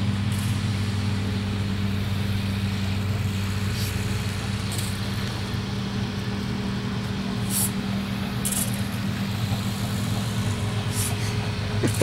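A steady low hum over a constant wash of outdoor noise, with a few faint short ticks scattered through it.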